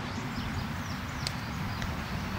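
Wind rumbling on the microphone, with faint bird chirps and two light clicks, one just past a second in and one near the end.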